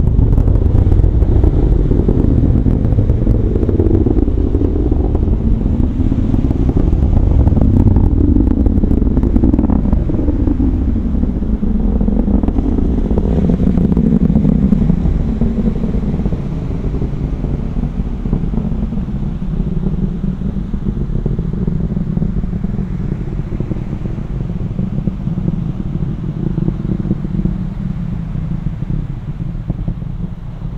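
Distant roar of an Atlas V rocket's engines climbing away: a deep continuous rumble with sharp crackle during the first ten seconds or so, slowly fading from about halfway as the rocket recedes.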